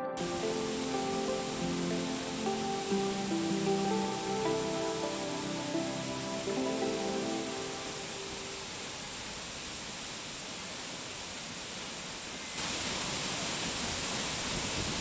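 Waterfall: the steady rush of falling water, with soft, gentle music over it that fades out about halfway through. The water gets louder near the end.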